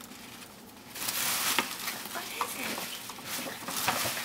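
Tissue paper rustling and crinkling as a present is unpacked from a gift bag, starting about a second in.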